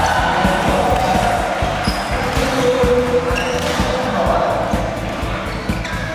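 Indoor badminton hall din: a constant run of irregular thumps and knocks, with a few brief shoe squeaks, over background chatter.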